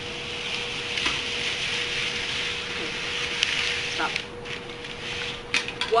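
Paper strips sliding and rubbing against each other and the paper sheet as they are pulled up through a slit, a steady papery hiss with a few light taps. It breaks off briefly near the end. A faint steady hum runs underneath.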